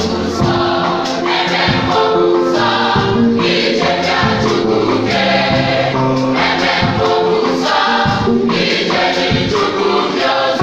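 Women's church choir singing a gospel song together over a steady beat.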